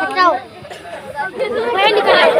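Indistinct chatter of voices with no clear words: a short burst near the start, a brief lull, then voices building again toward the end.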